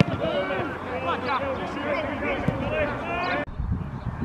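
Several men's voices shouting and calling at once across a football pitch during play, stopping suddenly about three and a half seconds in.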